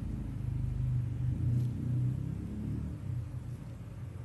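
A low rumble that swells a second or two in and eases off toward the end, with a faint click or two.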